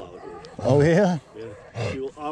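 A man's voice making short exclamations without clear words, with one loud drawn-out call that rises and falls, starting a little over half a second in.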